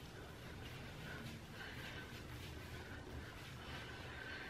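Faint, soft rubbing of hands working oil through wet hair, over low room hum.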